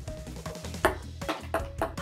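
A ping pong ball bouncing several times on a tabletop in quick succession, starting about a second in, over background music.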